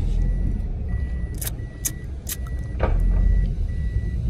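Car cabin sound: a steady low engine rumble with an electronic warning chime beeping over and over, about one and a half beeps a second. A few sharp clicks fall in the middle.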